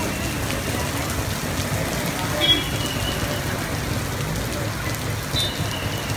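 Heavy rain falling steadily on a wet road and pavement. A short high-pitched beep comes about halfway through, and another comes near the end.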